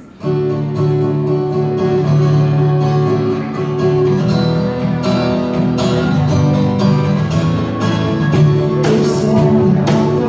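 Acoustic guitar strummed in a steady rhythm, the song's intro starting suddenly just after the start.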